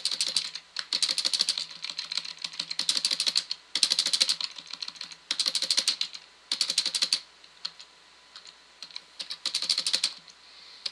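Typing on a computer keyboard in quick bursts of keystrokes, with a pause of about two seconds near the end before a last short burst.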